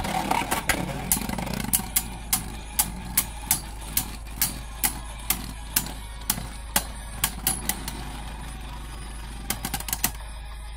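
Divine Belfyre and Lightning Pandora spinning tops whirring in a plastic stadium and clacking against each other about twice a second. The whir is strongest for the first couple of seconds, and near the end a quick flurry of clacks comes as one top slows and wobbles to a stop against the other.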